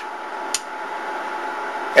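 A single sharp click about half a second in as the bench power supply's meter is switched from amps to volts, over a steady hiss of running equipment.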